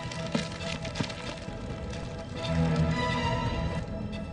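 Background music score with sustained held tones and a low swell that rises about two and a half seconds in.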